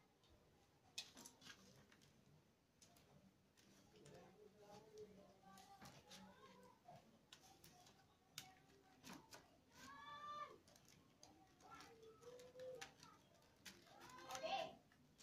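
Near silence: faint scattered clicks and rustles of rattan cane being worked by hand as a basket handle is wrapped, with a faint distant call about ten seconds in.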